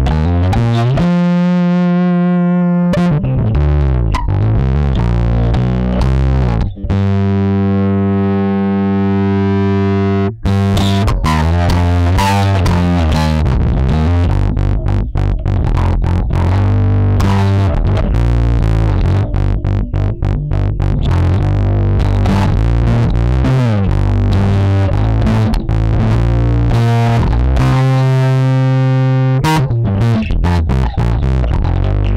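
Yamaha electric bass played through an Ashdown SZ Funk Face pedal, its 12AX7 valve overdrive and auto-wah both on with the wah sensitivity turned up: a distorted, funky bass line. Two long held notes ring out, one about a second in and one from about seven to ten seconds, between quicker runs of notes.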